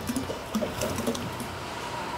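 Red potatoes dropping from a plastic tub into an empty perforated aluminum boil basket, a few light knocks near the start.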